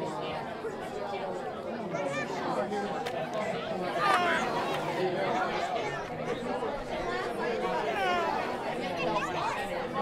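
A crowd of children chattering and calling out over one another, with a few louder high-pitched shouts about four seconds in and again near eight seconds.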